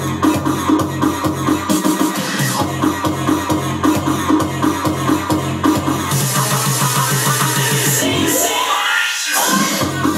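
Electronic dance music played in a live DJ mix, with a steady beat. The bass drops out briefly about two seconds in. From about six seconds a build-up of faster drum hits and rising hiss leads into a sweep that strips out the low end and brings it back just before the end.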